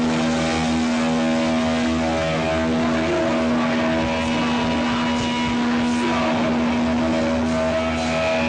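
Heavily distorted electric guitar and bass through stage amplifiers, holding one sustained chord as a steady, loud drone, with a few faint cymbal touches.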